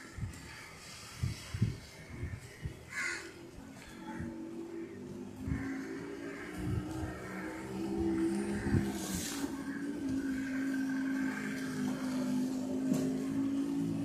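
Crows cawing in the first seconds, then a steady low hum of a vehicle engine that builds from about four seconds in and dips slightly in pitch partway through.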